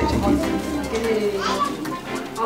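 A woman speaking Nepali in a short phrase, with other voices and music in the background.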